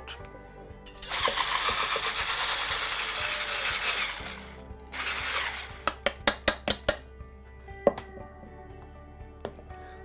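Corded electric stick blender with a whisk attachment whipping cream in a stainless steel bowl: it runs for about three seconds, then a short second burst, followed by a quick run of metallic clicks.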